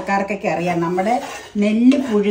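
A spatula stirring and scraping urad dal as it dry-roasts in a nonstick frying pan, with a woman's voice over it.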